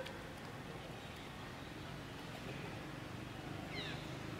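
Steady outdoor background noise, with one short, high call that slides downward near the end.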